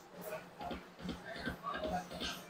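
Huff N' More Puff video slot machine running a spin: its reels spin and stop with short tones and ticks, against casino background chatter.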